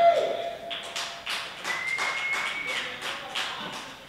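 Scattered clapping from a small audience after a song ends. The last note fades early on, and a thin high tone is held for about a second in the middle.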